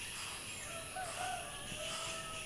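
A rooster crowing faintly, one long call with a wavering pitch that starts about half a second in and carries on past the end, over a steady high chorus of insects.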